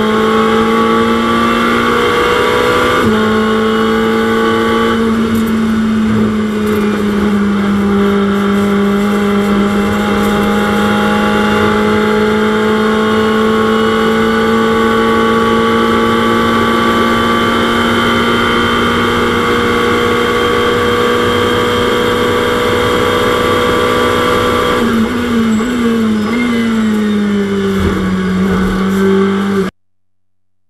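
Ferrari 488 GT3 twin-turbo V8 racing engine heard from inside the cockpit under full throttle, with a gear change in the first few seconds. It then pulls steadily down a long straight with its pitch slowly rising. Near the end the pitch steps down in a quick series of downshifts under braking, and the sound cuts out abruptly just before the end.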